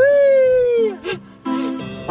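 A man's long, high-pitched "ooh" that stops about a second in, over background music with a stepping bass line.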